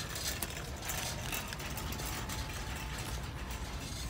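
Handbag, its price tag and hardware handled close to the microphone: a quick, irregular run of clicks and rustles over a steady low background hum.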